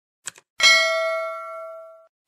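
A quick double mouse click, then a single bright bell ding that rings and fades away over about a second and a half: the click-and-notification-bell sound effect of a subscribe-button animation.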